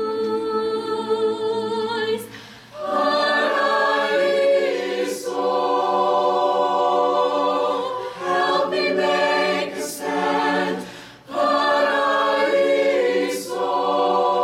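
Mixed chamber choir singing in sustained, many-voiced chords, breaking off briefly about two and a half and eleven seconds in before coming back together.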